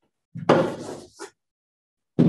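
A blackboard eraser knocking against the chalkboard and wiping across it: one short scrubbing burst about half a second in.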